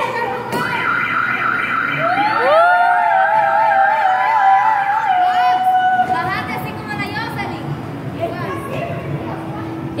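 Voices cheering with long, drawn-out shouts whose pitch wavers, strongest through the first half and fading to weaker shouts and calls near the end.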